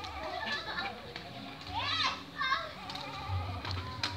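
Inline skate wheels rolling with a low rumble over rough concrete, with two short high calls from children about halfway through.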